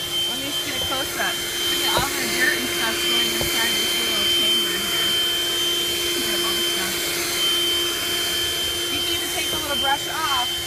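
Handheld 12-volt car vacuum (a combined vacuum and air-pump unit) running steadily as it sucks debris off car carpet: an even motor hum with a constant high whine over the rush of air.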